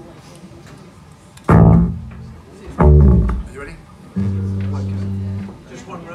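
Amplified acoustic guitar through the PA: two loud strums on the low strings about a second and a half apart, each ringing out, then a single low note held for just over a second before it is cut off.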